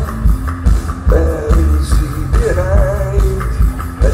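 Live post-punk band playing loud through a PA, recorded from the audience: pounding drums and bass, with a wavering lead line that swoops upward twice.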